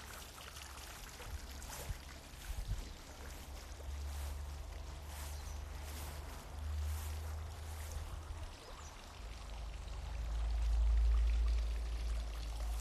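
A small garden fountain trickling steadily. A low rumble on the microphone swells and is loudest near the end.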